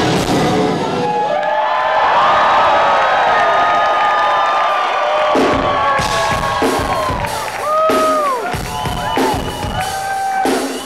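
Live rock band. After about a second the full band drops out, leaving sustained electric guitar notes that bend up and down in pitch over crowd cheering and whoops. Spaced drum hits come in from about halfway through.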